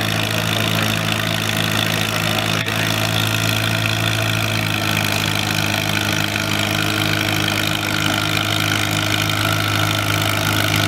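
Cockshutt 35 tractor's four-cylinder engine running steadily at a low, even speed, with no revving.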